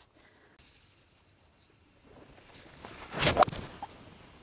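A golf swing with a 7-wood from the rough: a short whoosh and the club striking the ball about three seconds in, caught off the heel.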